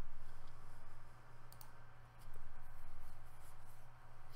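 A few light clicks of a computer mouse, two close together about one and a half seconds in and more near the end, over a steady low electrical hum.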